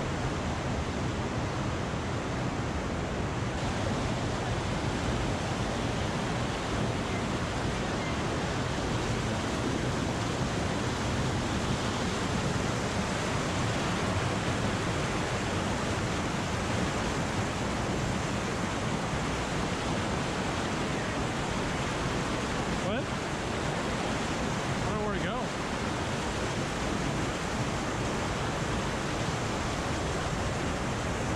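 Fast river water rushing and cascading over boulders, a steady whitewater rush with no break.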